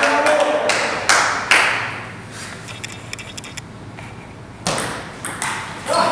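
Table tennis ball clicking off paddles and the table as a doubles rally starts in the last second or so, after a quieter stretch of light ball taps. The first second and a half holds clapping and voices dying down.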